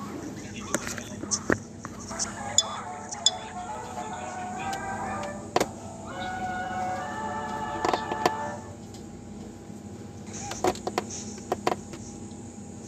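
Early-1930s cartoon soundtrack playing: music with a voice, scattered sharp clicks and a steady low hum under it.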